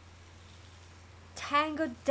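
A steady low hum in an otherwise quiet room, with no music playing. About one and a half seconds in comes a woman's short vocal utterance.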